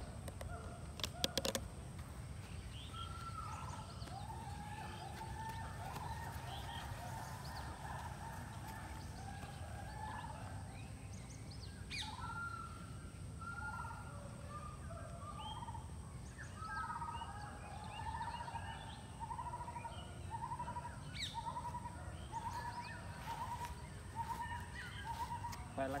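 Birds calling in the surrounding trees: a run of short repeated chirping notes that grows more frequent in the second half. Beneath them is a steady low background rumble, and a few sharp clicks come in about a second in.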